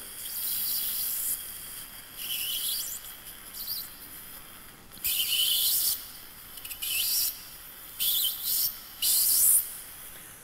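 Surgical implant drill in a contra-angle handpiece running in short bursts, about seven starts and stops, as it cuts an implant site through a guide sleeve. Each burst is a high-pitched whine that glides in pitch as the drill speeds up or slows.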